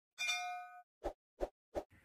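Subscribe-button animation sound effect: a bright bell-like ding ringing for about half a second, then three short soft pops about a third of a second apart.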